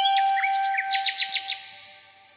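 Background flute music holding a long note that fades out, with a quick run of high bird chirps in the middle.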